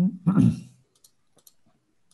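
A short laugh, then a few light, sharp computer mouse clicks about a second in.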